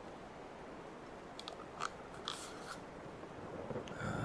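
Steady rain-storm ambience, with a few short, crisp crackles and clicks about halfway through from first-aid supplies being handled close to the microphone.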